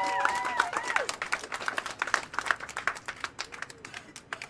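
A small audience applauding, with cheering shouts in the first second. The clapping then thins out and fades.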